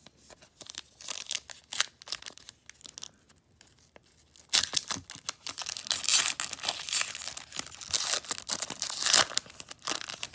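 A foil trading-card pack of 2020 Panini Contenders Draft Picks being handled and torn open by hand. There are scattered crinkles in the first few seconds, then a longer stretch of loud tearing and crinkling foil from about four and a half seconds in, stopping just before the end.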